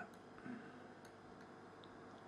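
Near silence: room tone, with one faint, brief soft sound about half a second in.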